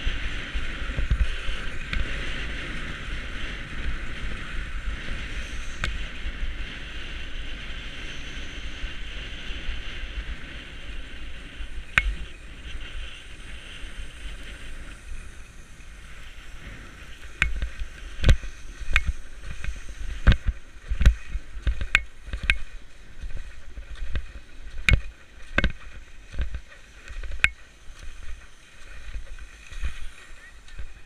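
Skis hissing and scraping over hard-packed groomed snow, with wind rumbling on the body-mounted camera's microphone during a downhill run. In the second half the scraping hiss dies down and a string of sharp knocks and thumps takes over as the skier slows.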